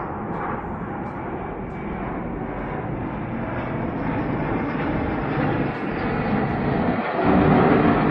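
Fighter jet flying low overhead, its engine giving a steady rushing jet noise that grows louder near the end.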